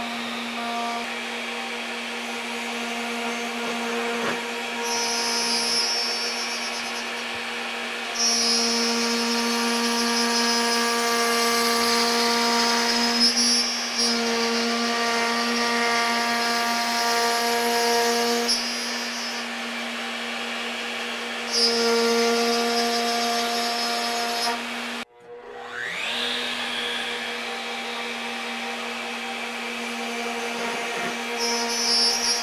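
Router table running steadily while its bit cuts a truss rod channel in a wooden guitar neck blank fed along the fence rails in shallow passes. The cutting gets louder and hissier in several stretches. About 25 seconds in the sound drops out for a moment, then the hum comes back with a rising pitch.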